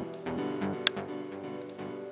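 Playback of an electronic track of sustained minor-key synth pad and piano chords over a bass line at 128 BPM. The kick drum that thumps about twice a second just before has dropped out here, leaving the held chords with a sharp high click about a second in.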